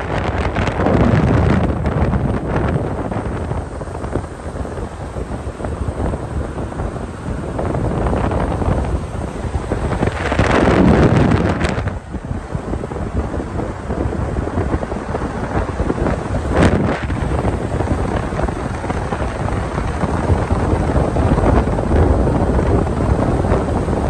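Wind buffeting the microphone of a phone filming from a moving car, over a steady rush of road noise. Gusts swell louder about a second in and again around ten to twelve seconds in, with a short sharp blast near seventeen seconds.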